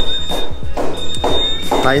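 A man's voice over background music with steady bass and a thin, steady high-pitched tone that breaks off about halfway through and returns.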